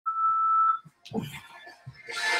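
A single steady electronic beep lasting under a second, followed by a short click and a spoken word.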